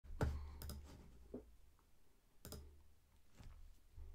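Faint, irregular clicks of someone working a computer, about seven in a few seconds, each with a dull low thump; the loudest comes right at the start.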